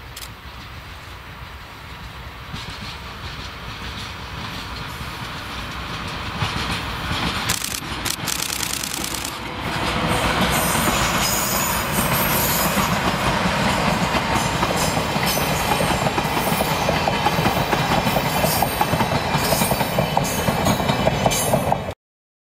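Two DE10 diesel-hydraulic locomotives running in tandem, hauling four old-type passenger coaches. The train's sound builds steadily as it approaches. From about ten seconds in, the coaches pass close by, loud, with a rapid clickety-clack of wheels over rail joints.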